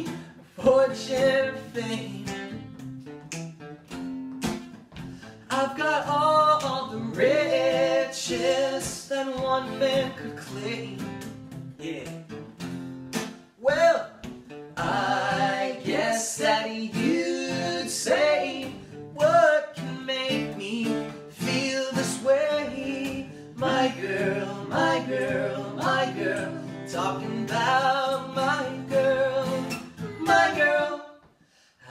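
Male voices singing a song together over a strummed acoustic guitar.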